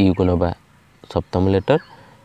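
Only speech: a voice speaking Odia in two short phrases, each about half a second long, with a pause between.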